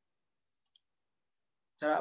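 Near silence broken by a single faint, short click a little under a second in, then a man's voice begins near the end.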